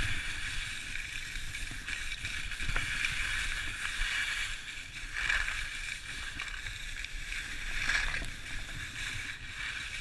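Skis sliding and scraping over packed snow on a downhill run, with wind rumbling on the microphone. The scraping hiss swells twice, about five and eight seconds in.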